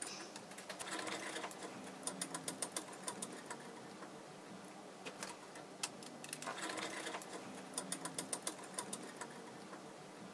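Metal nuts spun by hand along threaded rods, giving a few short runs of quick, light clicking.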